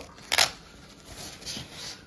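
A hook-and-loop strap on a goalie catch glove is pulled open with one short, loud rip. Quieter rustling follows as the glove's straps and padding are handled.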